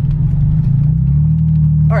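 Car engine heard from inside the cabin, a steady low drone whose pitch steps up slightly about a second in and then holds, as the car picks up speed.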